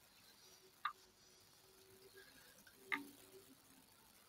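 Near silence with room tone, broken by two faint, short clicks about two seconds apart.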